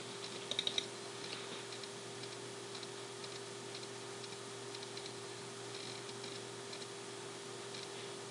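Faint computer mouse clicks: a quick cluster of clicks under a second in, then a few scattered light clicks, over a steady low hum.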